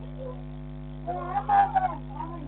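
Steady electrical mains hum on a security camera's audio, with a brief louder pitched call about a second in.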